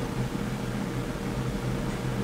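Steady low hum with an even hiss, unchanging throughout: the background noise of the recording room.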